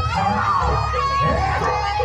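Live Javanese jaranan accompaniment: a shrill, reedy wind-instrument melody, typical of the slompret shawm, held and sliding between notes over a steady low drum and gong backing.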